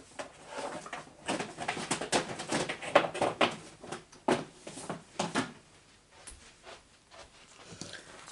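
Paper and cardstock scraps rustling and clattering as they are rummaged through: a run of irregular rustles and small knocks that dies down after about five and a half seconds.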